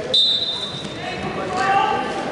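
Referee's whistle: one steady, high blast about a second long, starting the wrestlers from the referee's position. Shouting voices follow near the end.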